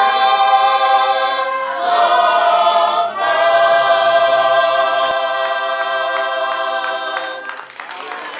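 A congregation of men and women singing a Tongan hymn together in harmony, holding long chords that change about two and three seconds in. The final chord fades out near the end.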